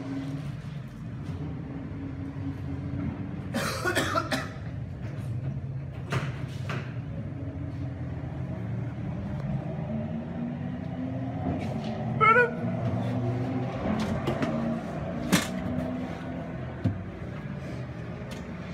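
Steady low drone of racing car engines heard inside a pit garage, with a few sharp knocks and clatters scattered through it.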